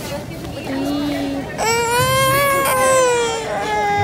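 A toddler crying: a short whine, then a long drawn-out wail starting about a second and a half in that slowly falls in pitch.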